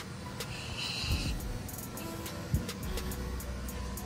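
Harley-Davidson Street Glide's V-twin engine on a cold start, turning over and settling into a low, steady idle, with a short knock about two and a half seconds in.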